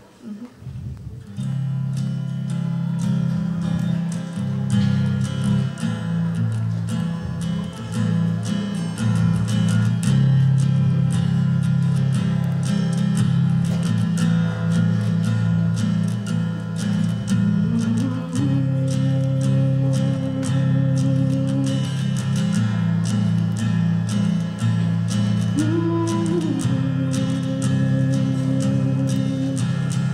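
Acoustic guitar being strummed in a steady rhythm, playing the instrumental introduction to a song; it starts about a second in. Twice in the second half a long steady higher note is held over the strumming.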